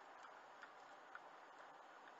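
Near silence: a faint hiss with light ticks about twice a second.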